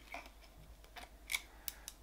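A zip tie gun tightening a nylon cable tie: a few faint, sharp clicks a little past the middle and near the end as the tool is worked and the tie draws tight.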